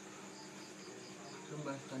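Crickets chirping in the night background: a steady high trill, with a short run of about five quick chirps a little under a second in. A voice starts speaking near the end.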